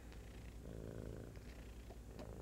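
Domestic cat purring steadily and close to the microphone as it rubs its face against a person's face, a sign of a contented, affectionate cat.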